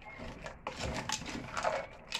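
Wooden spoon stirring dry fusilli pasta coated in sauce in an aluminium pot, with irregular scraping and rustling strokes and a few light knocks against the pot.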